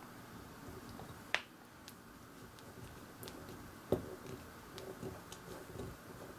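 Small screwdriver turning a tiny screw into black plastic model-kit suspension parts: quiet handling with scattered light clicks, two sharper clicks about a second and a half in and about four seconds in.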